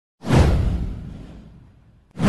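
Intro whoosh sound effect with a deep boom underneath. It hits suddenly about a fifth of a second in and fades away over about a second and a half.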